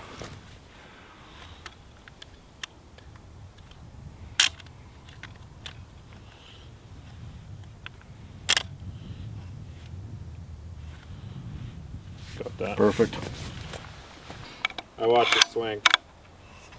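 Sharp mechanical clicks from a Sig Sauer Cross bolt-action rifle being handled and adjusted, two loud ones about four seconds apart among fainter ticks, over a low steady rumble of wind on the microphone. Brief low speech comes near the end.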